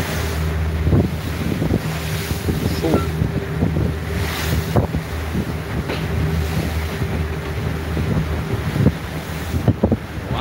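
Boat engines running steadily under way, with wind buffeting the microphone and irregular sharp knocks as the boat rides through choppy water.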